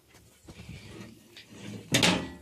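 Faint handling noises with light scrapes and clicks from the planter's sheet-metal fertilizer hopper, ending in one sharper knock.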